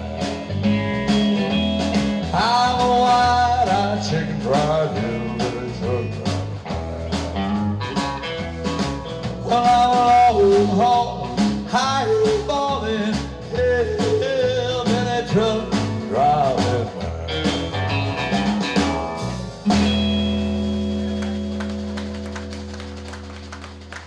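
Live honky-tonk/rockabilly band: a Fender Telecaster electric guitar plays a lead break full of string bends over bass and drums. About twenty seconds in the band hits a final chord that rings on and slowly fades.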